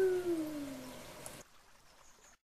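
A voice holding one long note that falls in pitch and fades out about a second in, the stretched end of a spoken goodbye; the sound then cuts off abruptly to near silence.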